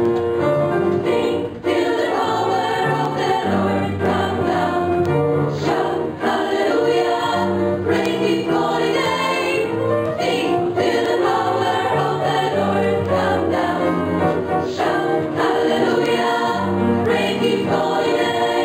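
A mixed youth choir of girls' and boys' voices singing a song in harmony.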